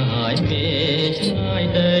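Music from an old Cambodian film-soundtrack song: held melody notes over a bass line that steps from note to note.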